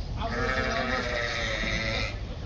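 A sheep bleating: a single long, steady call of nearly two seconds.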